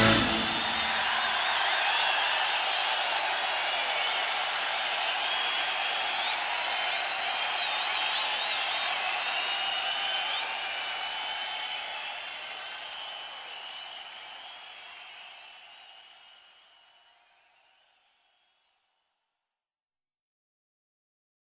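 Concert audience applauding and cheering with scattered whistles at the end of a live rock performance, steady for about ten seconds and then fading out to silence.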